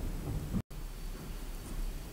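Low steady rumble of background noise, broken by a split second of dead silence about two-thirds of a second in.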